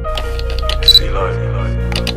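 Camera shutter click sound effects over a sustained synth music bed, with a loud quick double click about a second in and smaller clicks around it.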